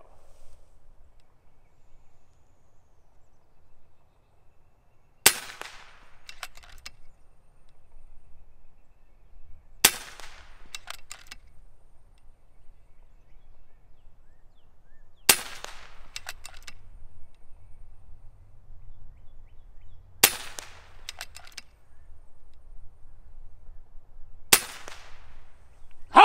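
FX Impact M3 PCP air rifle with a .357 600 mm barrel firing five shots at a steady pace, about one every five seconds. Each shot is a sharp crack with a short ringing tail, followed by a few faint clicks.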